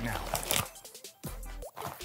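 Light rustling and crinkling as a cloth cable bag and plastic-wrapped power-supply cables are handled.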